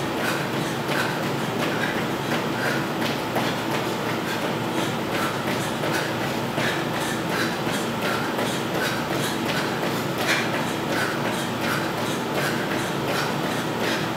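Quick, regular footfalls of trainers on a tiled floor during high-knee running in place, about three steps a second, over a steady hiss.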